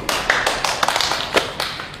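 Audience applauding: a dense patter of many hand claps that dies away near the end.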